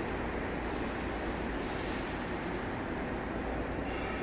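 Sandwich panel production line running: a steady mechanical noise from the roll-forming section's rollers and chain drives as the panel passes through, over a constant low hum.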